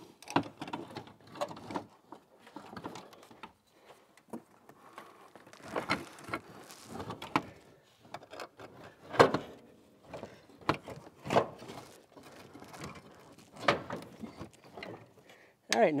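Irregular clunks, knocks and scrapes of an ARB twin air compressor on its mounting bracket as it is worked down into a pickup's engine bay and seated on the frame rail. The loudest knock comes about nine seconds in.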